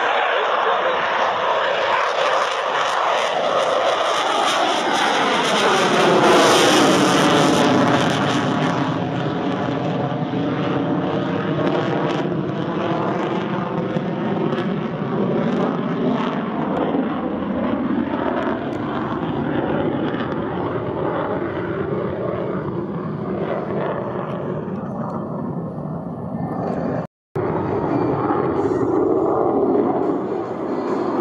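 F/A-18F Super Hornet's twin turbofan jet engines at full power on takeoff and climb-out, most likely in afterburner. The noise is loudest about seven seconds in, with a falling swoosh as the jet passes and climbs away. It then settles to steady, more distant jet noise, with a brief cut-out near the end.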